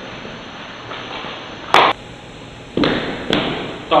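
A few sharp thumps: the loudest about two seconds in, then two more in the last second and a half.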